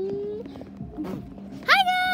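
A girl's voice: a rising hummed tone that breaks off within the first half second, then, near the end, a loud, high-pitched, drawn-out vocal cry.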